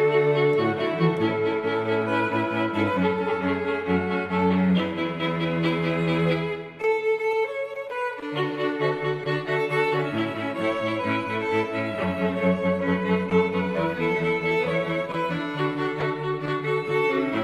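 A high school string orchestra playing, with violins and cello recorded separately at home and mixed together. The low strings drop out for a moment about halfway through while the upper parts carry on, then the full ensemble comes back in.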